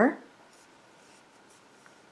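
Faint rubbing of a metal crochet hook drawing black yarn through a single crochet stitch, with one small tick near the end.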